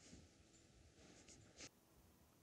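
Near silence: room tone with a few faint small clicks and rustles, one slightly louder near the end.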